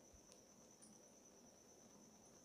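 Near silence: room tone with a faint, steady high-pitched whine and two faint ticks in the first second.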